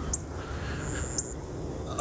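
Outdoor background during a pause in walking: a steady low rumble on the phone's microphone, with a few brief high chirps, one held for a moment about a second in.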